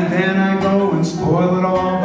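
A man singing a line of the song while strumming a Hive ukulele.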